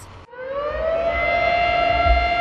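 A siren winding up: its pitch rises over about the first second, then holds a steady wail, with a low rumble beneath.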